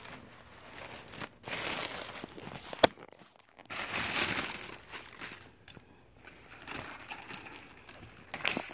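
Red tissue paper crinkling and rustling in three bursts as it is pulled out of a paper gift bag by hand. A single sharp click about three seconds in is the loudest sound.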